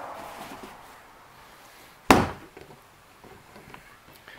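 A single sharp knock about two seconds in, with a brief ring after it.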